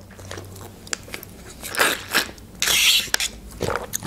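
Close-miked chewing and mouth sounds of a person eating, with scattered small clicks. A louder hissing noise lasts about half a second, a little under three seconds in.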